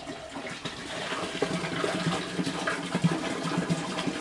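Water rushing and gurgling as an aquaponics gravel grow bed flushes, draining out through its siphon valve; it grows louder about a second in.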